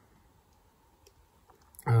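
A few faint, separate clicks over quiet room tone, then a person's voice starts up just before the end.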